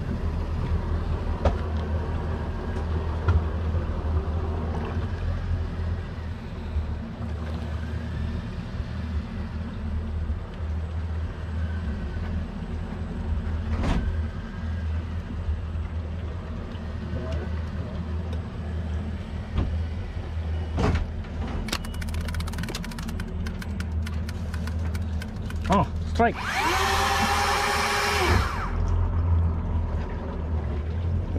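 A boat engine hums steadily and low under faint distant voices, with a few light clicks. Near the end a loud, wavering, pitched whine lasts about two and a half seconds.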